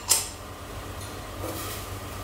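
A single sharp clink of a small glass prep bowl just at the start, then faint handling of the bowls over a low steady background hum.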